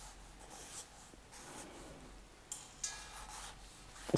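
Pen writing on a pad of paper: a word written out in block letters, heard as a series of faint, short scratching strokes.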